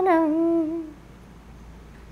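A woman's voice humming a held note that wavers slightly, steps down and ends about a second in. A faint low background hiss remains.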